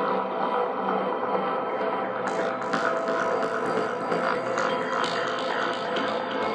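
Hypnotic techno track: steady droning electronic tones under a busy layer of fast ticking high percussion.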